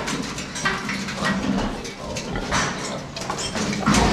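Piglet squealing in a run of short, repeated cries as it is caught and held up by a hind leg.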